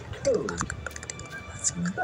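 Quick light clicks like typing on a phone's on-screen keyboard, with a short gliding voice sound near the start.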